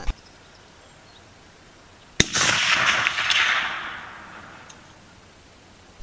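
A single rifle shot from a sporterized Remington-made US Model 1903 Springfield in .30-06, about two seconds in. A rolling echo follows and fades away over about two seconds.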